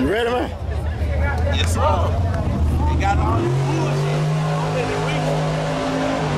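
Drag-racing car engine running nearby with a low rumble, settling into a steady held note about halfway through. Crowd voices talk over it in the first half.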